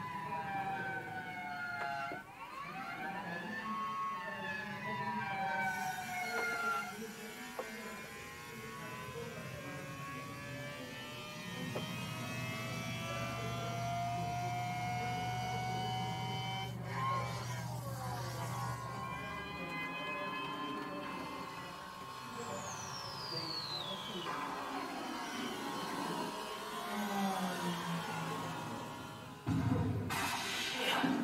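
Siren-like wailing tones that glide slowly up and down for several seconds at a time, with a low hum under them for a while and a high whistle falling steeply in pitch about three quarters of the way through.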